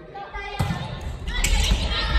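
A volleyball hit with a sharp smack about half a second in, then players shouting over further ball hits, echoing in a large gym hall.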